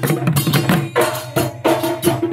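Live Assamese Husori folk music: a dhol beaten in a fast, driving rhythm of about five or six strokes a second, with other hand percussion and a steady pitched line underneath.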